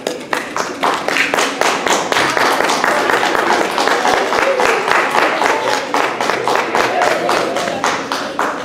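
Audience applause, many hands clapping with some voices among it, starting suddenly and holding steady.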